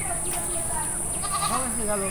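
A goat bleating in short, wavering calls, over a steady high insect buzz.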